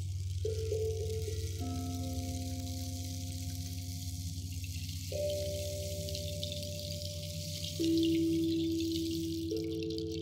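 Slow meditative music on an electronic keyboard: held tones over a steady low drone, with new notes coming in every couple of seconds. A louder note enters near the end and slowly fades, over a faint high shimmer.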